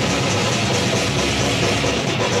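Live death metal/grindcore band playing loud, a dense, steady wall of distorted guitar and bass with a continuous low rumble.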